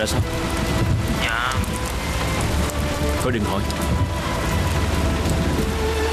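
Steady rain falling on a car, a continuous even hiss, with soft background music holding long notes over it.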